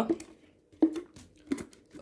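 Plastic wrapping on a shuttlecock tube crinkling as the tube is handled, in a few short, scattered crackles.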